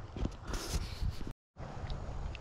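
Footsteps rustling and crunching through dry marsh grass and brush, over a low wind rumble on the microphone. The sound cuts out completely for a moment just past the middle.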